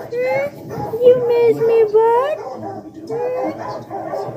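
A dog whining and crying in three long drawn-out cries, the middle one the longest, each rising in pitch at the end: the excited crying of a dog greeting its owner after a long absence.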